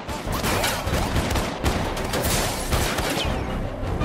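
Gunfire from several guns: many shots in quick succession, overlapping into a continuous barrage.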